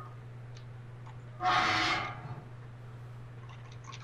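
A short rushing sound effect from an animation's soundtrack, starting suddenly about a second and a half in and fading away within a second.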